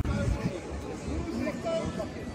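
Chatter of people talking on the footbridge, several voices mixed, with some music underneath.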